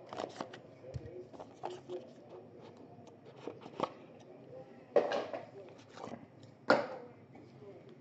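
A knife slitting the seal of a cardboard trading-card box, then the box being opened and handled: scattered light clicks and scrapes, with two louder scraping rustles about five and seven seconds in.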